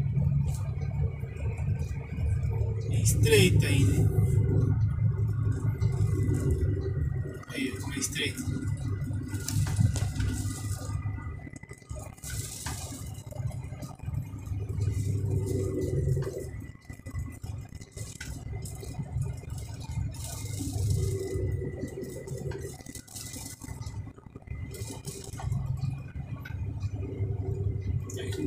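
Inside a heavy truck's cab: the diesel engine running low and steady on a winding mountain descent, with a faint steady high whine and occasional short rattles.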